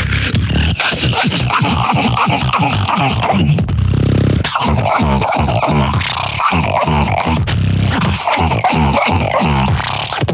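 Solo human beatbox routine: fast, dense kick-and-snare patterns with gliding vocal bass tones, and a held, buzzing bass note about four seconds in and again near eight seconds.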